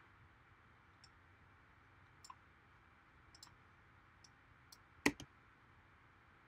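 Computer mouse clicking: a few faint, scattered clicks, the loudest about five seconds in.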